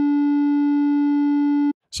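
A steady, low-pitched censor bleep tone held at an even level that cuts off suddenly near the end, dubbed over the speaker's words mid-sentence to mask what he was about to say.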